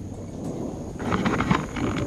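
Wind rumbling on the microphone, then from about a second in a quick run of sharp splashes and knocks as a small fish is brought up to the kayak.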